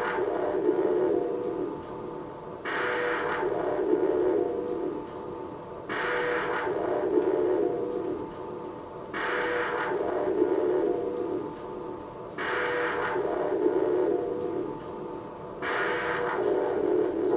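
Background music: a steady drone with a bright phrase that starts suddenly and fades, returning about every three seconds.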